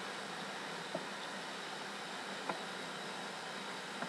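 Steady background hiss with two faint light taps, about a second in and again midway, from a spoon turning pasta and tuna in an enamel baking dish.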